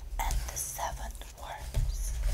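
A woman whispering close to the microphone, in short breathy phrases with pauses between them.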